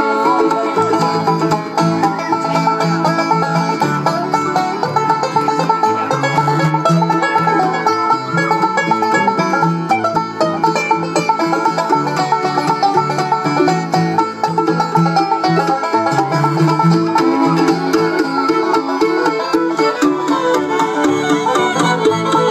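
Live bluegrass band playing an instrumental break with banjo, fiddle, mandolin, upright bass and acoustic guitar, the banjo picking fast over a walking bass line.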